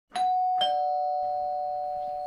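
Two-tone doorbell chime: a higher ding, then a lower dong about half a second later, both ringing on and slowly fading.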